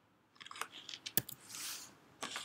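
Clicks and rustling from things being handled close to the microphone, with one sharp click about a second in.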